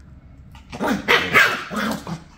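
Shiba Inu dogs play-fighting, with a quick run of three or four loud barks and growls starting about two-thirds of a second in.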